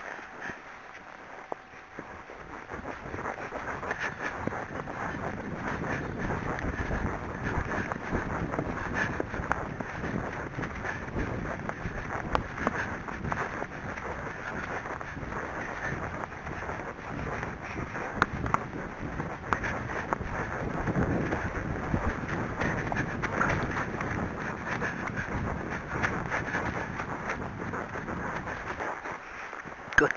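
Wind rushing over the camera microphone during a fast ride on horseback. It builds over the first few seconds and then stays steady and loud.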